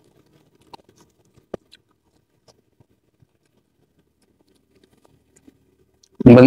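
Faint, sparse mouth clicks and smacks of chewing soft raw red tilapia close to a lapel microphone, with one slightly louder click about one and a half seconds in.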